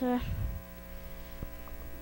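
Steady electrical mains hum, with a few low thumps about half a second in.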